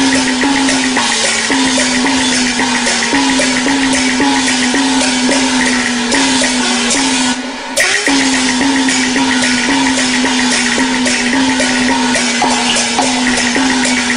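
Cantonese opera accompaniment ensemble playing an instrumental passage between sung lines, with a regular beat and a low note re-struck about twice a second, pausing briefly about halfway through.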